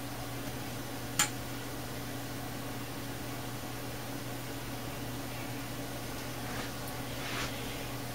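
Steady low hum of a running desktop computer, with one short sharp click about a second in: a network cable's RJ45 plug latching into the Ethernet port.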